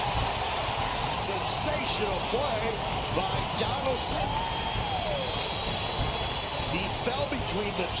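Ballpark crowd noise from a baseball TV broadcast: a steady hum of many voices with scattered shouts.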